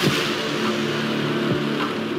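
Movie trailer sound design: a hit at the start opens into a sustained noisy wash over a low droning musical tone, with two low falling swoops about a second and a half apart.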